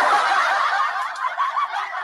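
Many voices laughing and snickering at once, a dense group laughter that sounds thin and tinny, with no low end.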